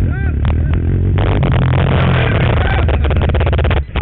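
A quad ATV's engine runs close by while people shout over it. A loud, harsh rush of noise starts about a second in and cuts off abruptly just before the end.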